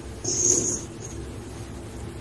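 Loose gym chalk powder scooped and pressed into a ball by hand, with one short, high squeaky crunch about a quarter second in, over a steady low hum.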